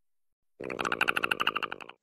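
Platypus growl: a rapid, rattling grumble of about a dozen pulses a second, starting about half a second in and lasting just over a second.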